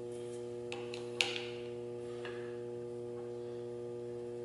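Steady electrical hum in a machine shop, with a few light metallic clicks and taps as a milling-machine vise stop is handled and adjusted, the sharpest click a little over a second in.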